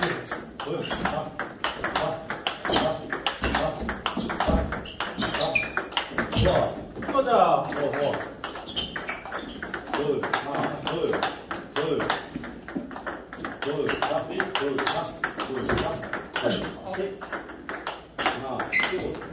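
Table tennis multiball drill: a rapid, continuous run of ball clicks off the paddles and the table as balls are fed one after another and driven back with forehand drives. A voice is heard now and then, most clearly about halfway through.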